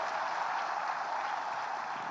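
Audience applause: a large crowd clapping steadily, easing off a little near the end.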